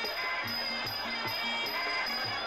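Traditional Thai boxing ringside music: a steady drum beat at about two and a half beats a second, small cymbals ticking on each beat, and a wavering wind melody above.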